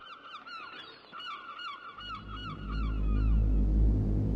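A flock of birds calling: many short, honk-like calls repeated rapidly and overlapping, fading out near the end. A deep rumble swells in about halfway through and grows loud.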